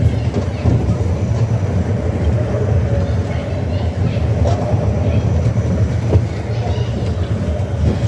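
Family roller coaster train running along its steel track: a steady, loud rumble of the wheels on the rails.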